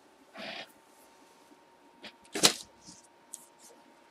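Handling noises from a box break: a short soft rustle about half a second in, then a sharper, louder rustle about two and a half seconds in, with a few faint clicks.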